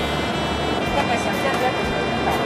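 Steady engine and road noise heard inside a moving tour coach, an even rumble with no sudden sounds.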